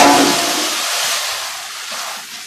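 Wheat grain pouring from a sack into a galvanized metal storage drum: a loud rushing hiss that starts suddenly and slowly fades.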